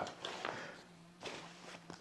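Faint rustling and shuffling of a ballistic nylon backpack being handled as its half-zip lid is let fall open.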